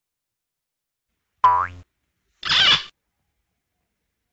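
Cartoon 'boing' sound effect with a quickly rising pitch about a second and a half in, followed about a second later by a short hissing burst of noise, both on an otherwise silent track.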